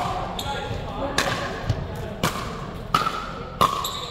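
Pickleball rally: about five sharp pops, each a paddle hitting the hard plastic ball, less than a second or so apart, each with a short ring of echo from the gym.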